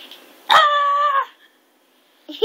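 A toddler's single high-pitched squeal, held at one pitch for under a second and dropping slightly at the end.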